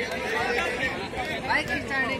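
Chatter of a crowd of young men talking among themselves, several voices overlapping at a moderate level with no single loud shout.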